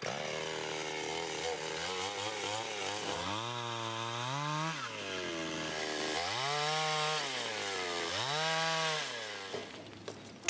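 Gasoline chainsaw running, its engine pitch climbing, holding and falling back three times as it is revved to cut through a log on a sawhorse.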